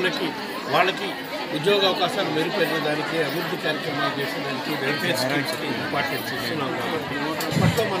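Speech: a man talking to a bank of press microphones, with other people's voices chattering around him.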